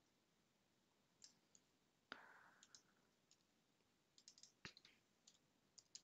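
A few faint computer keyboard keystrokes, scattered and irregular, with a small cluster near the end, against near silence.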